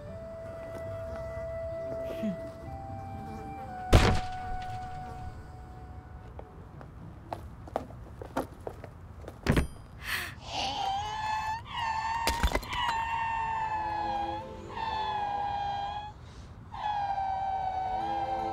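Several heavy thuds, the loudest about four seconds in. Then, from about ten seconds in, an injured baby dragon's high, wavering cries come again and again, breaking off and starting up again.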